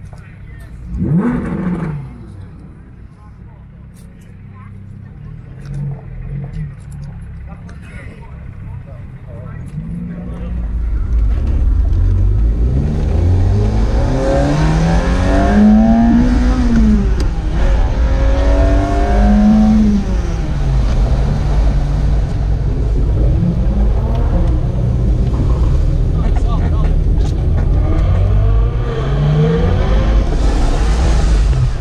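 Ferrari engine heard from inside the cabin, accelerating hard with its pitch climbing and dropping back at each gear change, over a heavy low road rumble. About a second in, a short engine rev rises sharply from a car in a parking lot.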